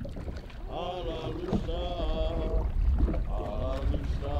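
Voices chanting in long held notes, about four of them, some sliding up at the start, over a steady low rumble.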